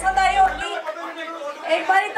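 A woman's voice amplified through a handheld microphone, over crowd chatter in a large hall. A low bass tone underneath stops about half a second in.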